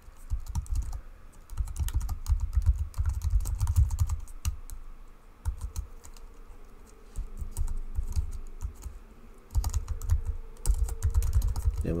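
Typing on a computer keyboard: quick runs of keystrokes, thinning to scattered clicks in the middle before picking up again near the end.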